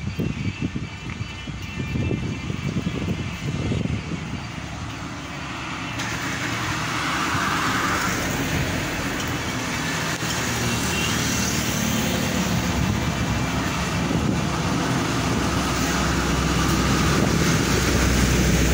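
Road traffic passing close by: a motorcycle goes by, then a heavy lorry pulling a loaded low-bed trailer approaches, its engine's low rumble growing steadily louder toward the end.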